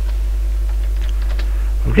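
Computer keyboard being typed on, a few keystrokes about a second in, over a steady low mains hum.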